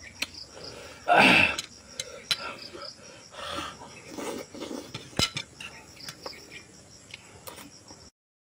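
Close-up eating sounds of a man tearing meat from a cow's head by hand and sucking it off the bone, with wet mouth noises and a loud noisy burst about a second in. A steady high insect chorus runs underneath.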